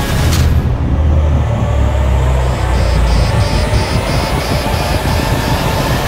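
Trailer sound mix of dramatic score over a heavy low rumble of aircraft engine noise, with a high pulsing beep repeating about three to four times a second through the middle.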